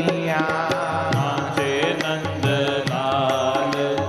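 Live Hindu devotional bhajan music: a wavering melody line over a steady percussion beat.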